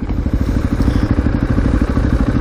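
KTM 450 supermoto's single-cylinder four-stroke engine idling steadily, with an even, rapid pulse.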